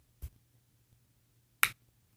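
Two short clicks from handling: a faint one just after the start and a single sharp, loud click about one and a half seconds in, while the phone camera is being moved.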